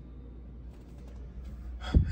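Quiet room with a low steady hum, then a sharp intake of breath, a gasp, just before the end.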